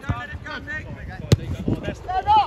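Voices calling out on an outdoor pitch, with wind on the microphone, and a single sharp thump about one and a half seconds in: a football being kicked.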